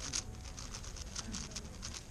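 X-Man Spark V2 7x7 speedcube turned rapidly by hand: a fast, irregular stream of plastic clicks and clacks from its layers turning, about five or six a second.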